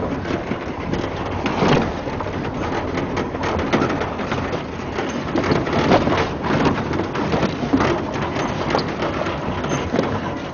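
A vehicle driving over a rough dirt track: steady rumble of road and engine with frequent rattles and knocks from the bumpy ground.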